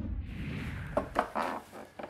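TV transition sound effect: a falling whoosh ending in a low boom as the title graphic comes up. It is followed by a few short clicks and knocks over a faint noisy background.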